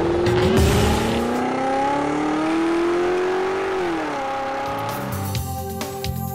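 A car engine sound effect accelerating, its pitch climbing steadily for about four seconds and then dropping sharply, over background music. Near the end, music with a beat takes over.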